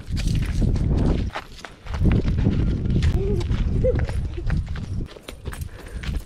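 Running footfalls on a dirt path with wind buffeting the microphone, a heavy low rumble in two stretches: the first about a second long, the second about three seconds.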